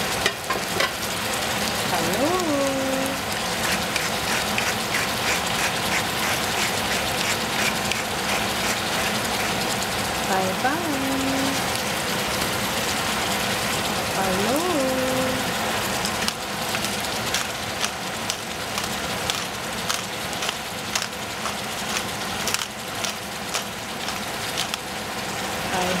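Sliced summer squash sizzling steadily in a stainless steel saucepan on a gas burner, with many small crackles.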